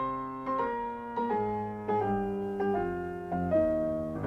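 Background piano music: slow, a new note or chord struck roughly every half second, each ringing and fading, the melody stepping downward.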